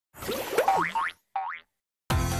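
Cartoon boing sound effects for the animated Disney Junior logo: a quick run of bouncy tones sliding up and down in pitch, then one short upward boing about a second and a half in.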